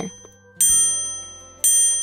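Background music with bright bell-like chime notes: two dings about a second apart, each ringing out and fading.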